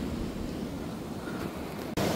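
Wind on the microphone over surf breaking on the beach: a steady hiss with a low rumble, briefly dropping out near the end.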